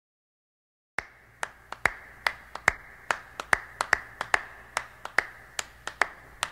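Hand claps, sharp and unevenly spaced at about two to three a second, starting about a second in after silence, over a faint steady high tone: the clapped opening of a song.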